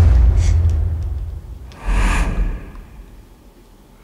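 Horror film trailer sound design: a deep low rumble that fades over the first second and a half, then a second low hit with a short hiss about two seconds in, dying away to quiet.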